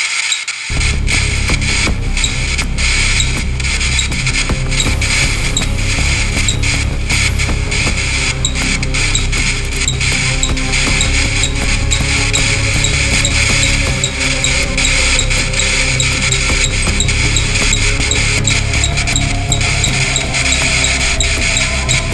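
Loud, dense music with a static-like hiss. It starts abruptly about a second in and runs on without a break.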